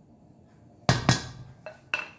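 A bowl and spatula knocking against the rim of a stainless steel mixing bowl while mashed banana is scraped in: two sharp knocks about a second in, then two lighter ones near the end, each with a brief metallic ring.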